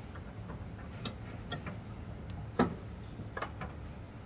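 Scattered metal clicks and knocks, about half a dozen, as a steel airbag bracket is worked into place against a truck's rear leaf spring, the loudest knock about two and a half seconds in, over a steady low hum.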